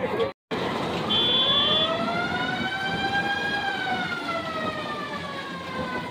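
A siren wailing: one slow rise in pitch and fall again over about five seconds. A short high beep sounds about a second in.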